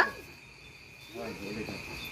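Soft background voices of people talking at the table, starting about a second in, over a steady high-pitched insect trill.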